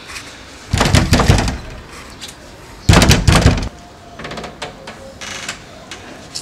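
Fists pounding on a wooden door in two loud bouts of rapid blows, about two seconds apart, followed by a few faint knocks.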